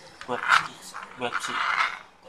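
Speech only: a man talking in short phrases, with no other sound standing out.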